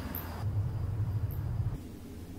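A low rumble that swells about half a second in and drops away just before the end, with two faint high ticks.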